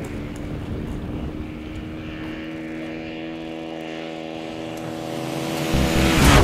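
Dirt bike engine droning steadily at a constant pitch as the bike approaches, growing louder toward the end. Near the end a heavy bass beat and a loud whoosh come in.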